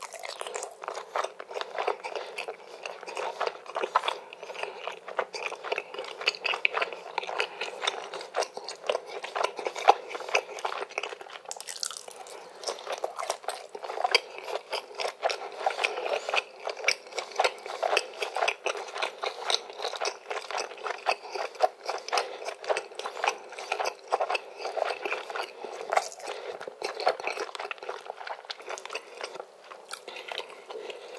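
Close-miked chewing of a mouthful of spicy Korean ramen noodles and cheesy grilled chicken: a dense, continuous run of small wet mouth clicks, with a brief hiss about twelve seconds in.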